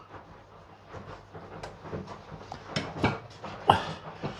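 A carving knife slicing through a roast beef joint on a plastic chopping board: quiet, with a few short scrapes and taps.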